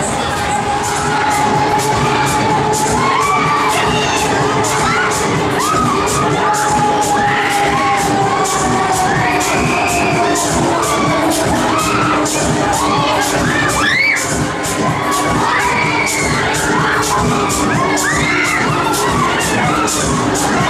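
Riders screaming and shrieking on a spinning Break Dance fairground ride, many short cries over loud ride music with a steady beat.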